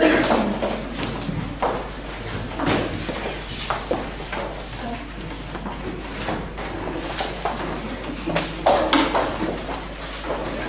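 Scattered knocks, shuffling and paper rustling as people move about and settle in a hall, with brief murmured voices.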